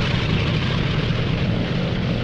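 Radial piston engines of B-25 Mitchell bombers running steadily, a loud, even drone with no break.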